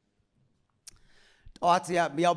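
Near silence, then a single sharp click just before a second in, and a man's voice starts speaking loudly in Amharic through a handheld microphone about half a second later.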